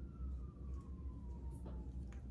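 A faint single tone gliding slowly down in pitch over a low steady hum, with a couple of faint ticks about halfway through.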